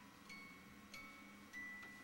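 Faint chime-like notes from a crib soother playing a slow lullaby, one ringing note at a time, three notes at different pitches, each starting with a small click.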